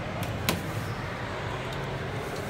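One sharp click about half a second in, with a fainter one just before, from a stainless elevator car push button being pressed. A steady low hum runs underneath.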